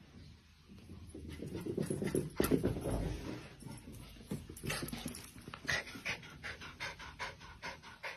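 Dog panting, swelling up about a second in, then quick, even breaths at about three or four a second in the second half.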